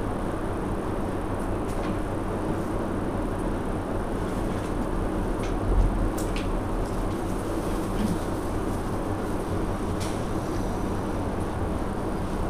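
Steady background noise with a low hum, and a few faint ticks.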